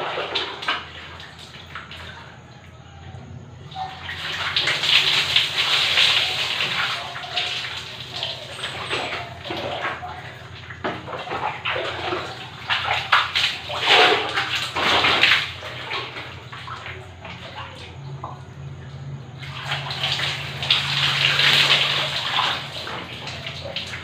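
Bucket bath: water scooped from a bucket with a plastic dipper and poured over the body, splashing onto a concrete floor. There are two long pours, about four seconds in and again about twenty seconds in, with shorter splashes and dipper knocks between them.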